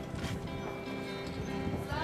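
Two acoustic guitars strumming chords, with no singing over them.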